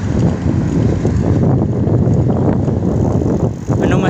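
Wind buffeting the microphone of a phone carried on a moving bicycle: a loud, unsteady low rumble.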